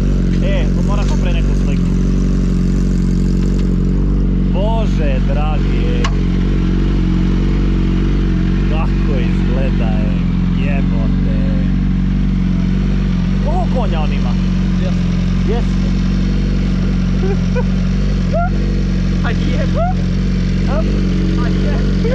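BMW S 1000 RR inline-four engine idling steadily through an Akrapovič exhaust, with no revving.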